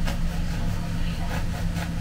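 A kitchen knife sawing through the crust of a bread roll in short strokes, over a steady low hum.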